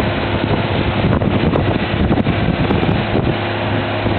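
Wind buffeting a small camera's built-in microphone, with irregular low rumbling over a steady low mechanical hum from a running engine in the background.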